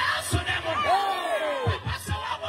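A man's loud, declaiming voice through a handheld microphone and loudspeaker, rising and falling in pitch, with crowd voices around him and a few low thumps.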